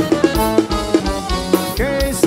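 Forró band music, live: a drum kit beat under held accordion chords, with no singing in this stretch.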